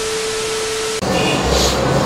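TV-static transition sound effect: a loud, even hiss with a steady mid-pitched beep for about a second, cutting off abruptly. Background music follows.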